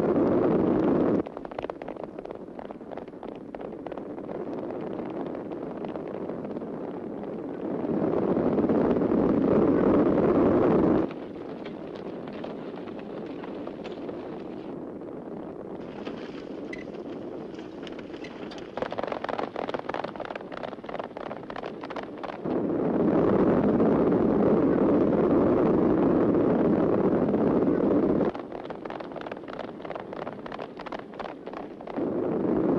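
A herd of horses stampeding at a gallop on a film soundtrack: a dense rumble of many hooves. Three loud stretches start and stop abruptly, and between them come quieter passages of clattering hoofbeats.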